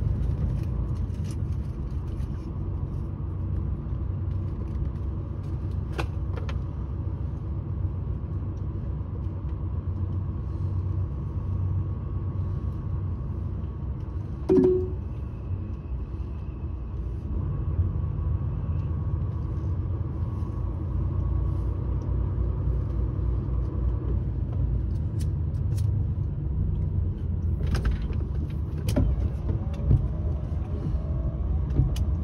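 A vehicle's engine and road noise heard from inside the cab as it drives: a steady low rumble, broken about halfway by a brief loud tone, with a few faint clicks and rattles.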